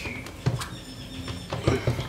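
Several light clicks and knocks of hands handling a washing-machine direct-drive motor stator and its wire connector on the bench.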